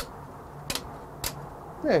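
Screwless plastic wall plate snapping onto its mounting plate over a wall switch: three sharp clicks about half a second apart.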